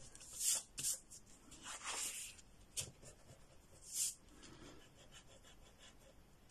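Graphite pencil drawing on paper: about five separate short strokes, the longest about two seconds in.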